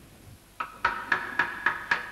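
A run of evenly spaced, sharp struck hits, each ringing on a steady pitch, about four a second, starting about half a second in.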